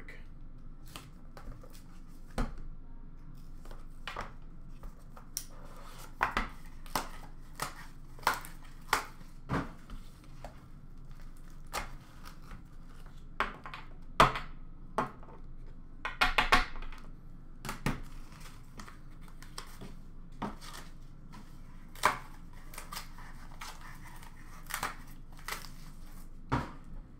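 Hands opening a cardboard trading-card box and handling the packs and cards inside. Scattered clicks, taps and rustles of cardboard and wrapper, with a brief burst of crinkling about two-thirds of the way through.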